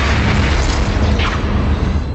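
Sci-fi film sound effects of a deep, loud booming rumble of explosions or weapon blasts, as of a starship under attack, with a further blast about a second in.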